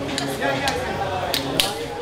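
Background chatter of many people in a busy pool hall, with several sharp clicks of pool balls striking each other on nearby tables, the loudest about one and a half seconds in.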